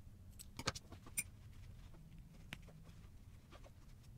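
Small embroidery scissors snipping ribbon: a few faint, sharp metal clicks in the first second and a half, and one more about two and a half seconds in.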